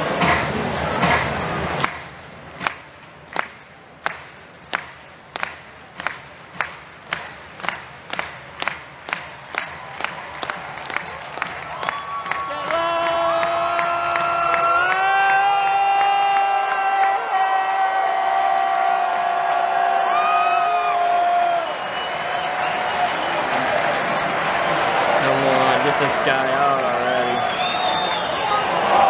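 Ballpark crowd-hype sequence: sharp rhythmic claps start slow and speed up over about ten seconds. A long held electronic tone follows, stepping up in pitch once and holding, while the stadium crowd grows into cheering and yelling near the end.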